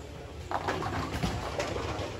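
Bowling alley background: indistinct voices over a steady low rumble.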